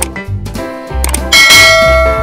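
Light background music with a steady beat, a short click at the start and a bright bell chime about one and a half seconds in that rings on and fades slowly: a subscribe-button click and notification-bell sound effect.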